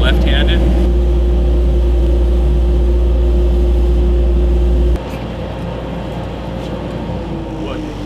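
Sandblast cabinet running while a coated metal mug is blasted: a loud, steady hum and hiss. It cuts off sharply about five seconds in, leaving a quieter hum with a tone that slowly sinks in pitch, like a motor winding down.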